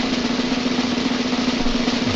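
Snare drum roll played as an announcement fanfare: a fast, unbroken roll with a steady low note held under it.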